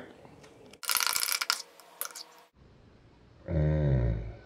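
Metal spoon scraping and clinking against the inside of a ceramic mug of thick milkshake, for about a second and a half, then a man's voice briefly near the end.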